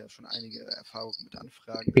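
Quieter speech in German, the original talk mixed under the English interpretation, with a faint high-pitched steady whine coming and going over it.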